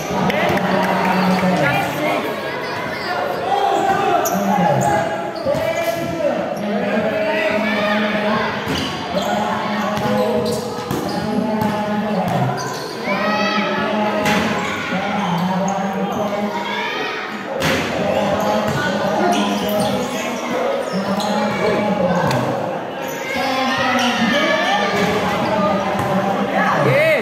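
A basketball bouncing and being dribbled on a hard outdoor court during live play, with sharp impacts scattered through. Continuous talking and calling from players and onlookers runs under it.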